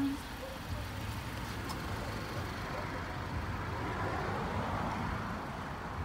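Road traffic noise: a vehicle going by, a broad rushing sound that swells to a peak about four seconds in and then eases off, over a steady low rumble.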